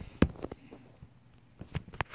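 Handling clicks on a wooden tabletop: one sharp click about a quarter second in, then a few faint taps and clicks.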